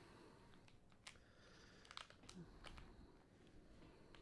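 Near silence: room tone with a few faint, sharp clicks.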